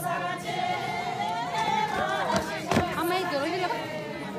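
A group of men and women singing together in a line dance, a Hyolmo folk dance song with held, wavering notes, with a sharp knock partway through.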